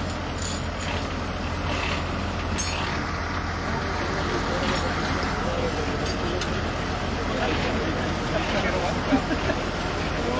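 A tractor engine idling steadily with a low hum, with people talking quietly in the background.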